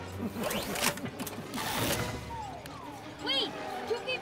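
Two quick swishing rushes of a fast-moving car in a film sound mix, then a short laugh near the end.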